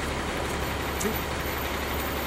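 Steady low rumble of city street traffic, with a heavy vehicle such as a truck or bus running close by.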